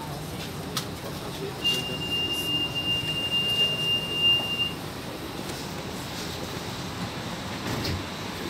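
Door-closing warning tone inside a CPTM series 3000 electric train car: one steady high beep held for about three seconds, over the car's low running hum.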